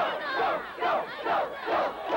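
Crowd of football spectators yelling, many voices at once, in surges about twice a second.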